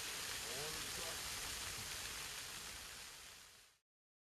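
Faint, steady hiss of fountain jets spraying and splashing onto pavement, with a short voice sound about half a second in. The water sound fades out about three seconds in.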